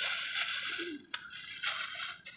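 Soft rustling handling noise with a single sharp click a little after a second in.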